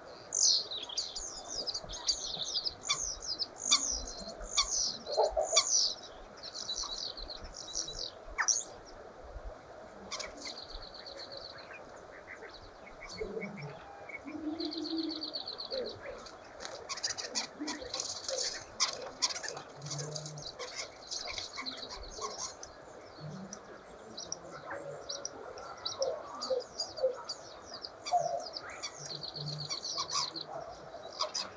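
Common starling singing: a varied string of chirps and whistles broken by fast rattling trills and clicks. A brief flutter of wings comes about halfway through.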